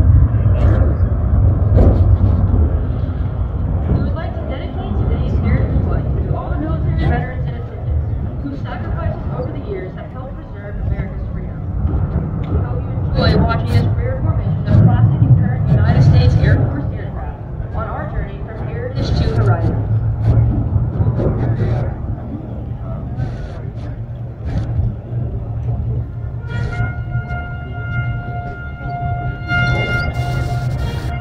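Steady low rumble of a distant jet and piston-engine formation flyby, mixed with indistinct public-address speech and music; from near the end a held musical chord comes through.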